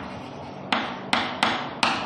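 Chalk writing on a chalkboard: four sharp taps of the chalk hitting the board in the second half, each trailing off in a short scratching stroke.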